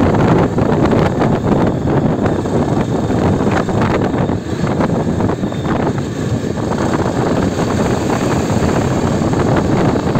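Wind rushing over the microphone of a Yezdi Adventure motorcycle at around 40–50 km/h, with the bike's single-cylinder engine running underneath. The sound eases a little around the middle as the bike slows, then builds again as it speeds up.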